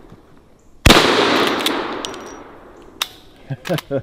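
A single .44 Magnum shot from a Marlin 1894 Cowboy Limited lever-action rifle about a second in, its report echoing and fading over about two seconds. A couple of short, sharp clicks follow near the end.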